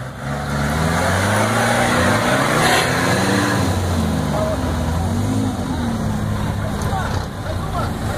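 Troller 4x4's engine revving up and down under load as it struggles through deep mud, the pitch rising and falling several times over a churning noise.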